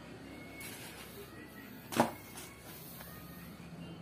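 A single sharp knock about halfway through, over faint room noise.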